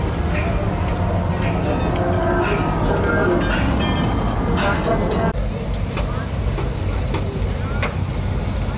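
Lowrider cars rolling slowly past with a steady low engine rumble, mixed with music and crowd voices. About five seconds in, the higher sounds drop away abruptly, leaving mostly the rumble.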